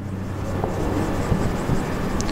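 A steady rumble and hiss of background noise, with a marker writing on a whiteboard.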